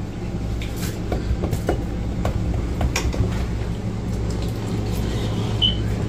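A steady low mechanical hum, with scattered light clicks and taps of forks and cutlery on plates.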